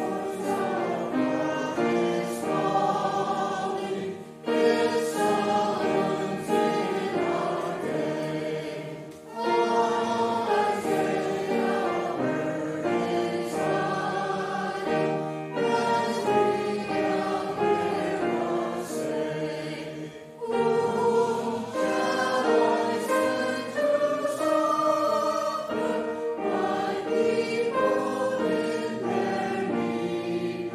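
Church choir singing a hymn, in sustained phrases with brief pauses for breath between them.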